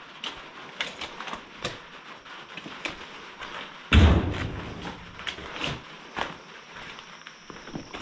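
Handling noises: scattered light clicks and knocks from snake tongs and a hook, and footsteps, with one heavy thump about four seconds in.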